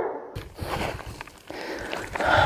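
A hiker's footsteps and rustling on a rocky, grassy slope: scattered short crunches over a low rumble on the microphone.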